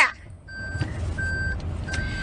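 An electronic beeper sounding a steady high tone on and off, three beeps about two-thirds of a second apart, over a low rumble.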